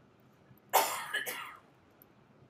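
A person coughing twice in quick succession, starting about three-quarters of a second in.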